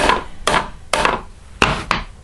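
Ball-peen hammer striking a fibreglassed, resin-coated armour piece about five times in sharp, unevenly spaced knocks. The piece takes the blows without giving, which shows the fibreglass has made it rigid.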